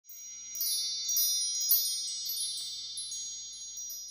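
A run of high, ringing chime tones struck one after another and left to ring, most of them in the first three seconds, then slowly fading away: a chime sound effect under the opening title card.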